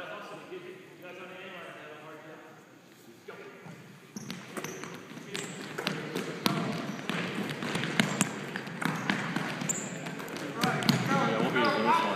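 Basketballs bouncing and players' feet running on a gymnasium's hardwood floor, with voices in the background. The knocks start about four seconds in and grow busier and louder toward the end.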